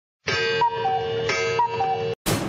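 Short electronic comic jingle: a falling two-note figure over a held lower tone, played twice, then cut off abruptly.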